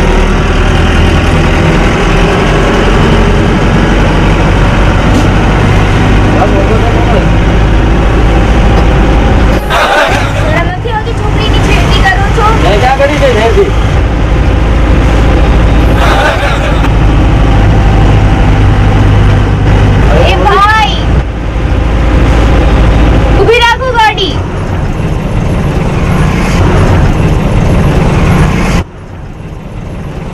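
Bus engine running, heard from inside the cabin as a loud, steady low drone that cuts off abruptly near the end. From about ten seconds in, a voice comes and goes in long gliding notes over it.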